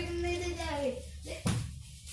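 A child's voice speaking for about the first second, then a single sharp thump about one and a half seconds in.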